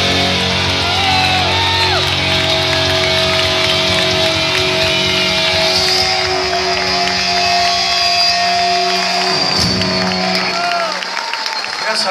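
Live stoner rock band, with distorted electric guitars, bass and drums, holding a long final chord at the close of a song. The crowd cheers and whistles over it. The band stops about ten seconds in, leaving the audience noise.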